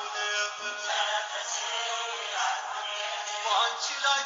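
Music with a singing voice. The sound is thin, with almost no bass.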